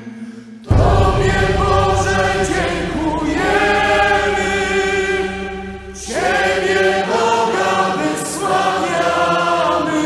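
A choir singing long held chords. After a brief pause, the singing comes in loudly under a second in, eases off just before six seconds, and a new phrase begins right after.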